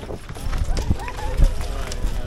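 Hoofbeats of a harness-racing pacer pulling a two-wheeled racing cart along a dirt track, with a few heavier thuds about half a second, one second and a second and a half in. Spectators' voices chatter around it.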